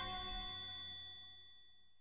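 A bell-like ding ringing out: several clear tones dying away smoothly and fading to nothing about one and a half seconds in.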